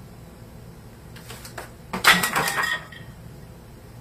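A few light clicks, then a loud crash about two seconds in: objects clattering down with a short ringing note, lasting under a second.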